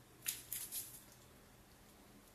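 A quick cluster of short, soft scraping or rustling noises within the first second, then quiet bathroom room tone.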